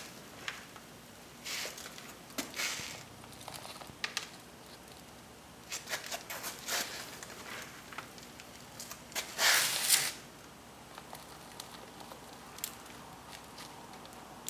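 Potting soil with perlite being added to a plastic pot and pressed down by hand. Soft, intermittent rustling and crumbling with a few light clicks, the longest rustle about two-thirds of the way through.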